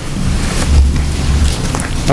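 Rushing, rumbling noise on a close table microphone, loud and steady with a deep low rumble, the kind of noise made by air or handling right at the microphone.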